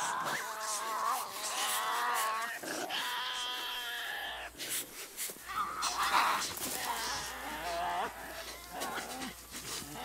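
Several Tasmanian devils squabbling, giving wavering, high-pitched whining calls in overlapping bouts, with a short lull about four seconds in.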